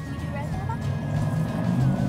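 A passing car's low rumble, growing louder toward the end, with a thin steady tone of background music over it.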